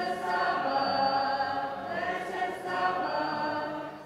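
Two young women singing a religious song together, holding long notes.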